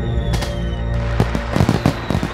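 Fireworks going off over music: a sharp bang about a third of a second in, then a quick run of crackling pops in the second half.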